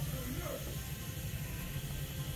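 Quiet background with a steady low rumble, and a faint voice murmuring briefly about half a second in.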